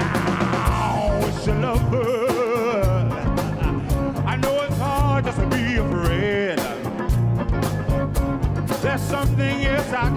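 Live funk band playing a steady groove of bass guitar and drums, with congas and guitar, while a lead singer sings wavering, wordless vocal lines over it.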